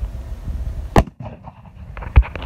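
A man sneezing once, a short sharp burst about a second in, with the phone's handling noise and low rumble around it.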